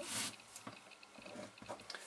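Faint handling sounds of hands on paper: a short rustle at the start, then a few light taps as a ballpoint pen is brought down to write.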